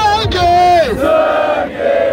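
A crowd of young men shouting together in a crowd vote for a rap-battle MC, several voices holding long, drawn-out calls at once.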